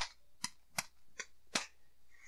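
A run of five sharp clicks, about two or three a second, from a small object being handled in the hands.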